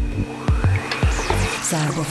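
Live electronic jazz-band music: a drum-machine beat with steady low kicks under synthesizer chords, with a rising synth noise sweep and swooping high effects in the middle and a low synth bass tone coming in near the end.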